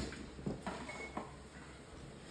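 Faint kitchen handling at a stovetop frying pan: a few soft knocks and scrapes in the first second or so, then low room noise.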